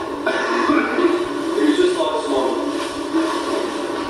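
Indistinct, muffled voice with music behind it, thin in the bass and going on without a break.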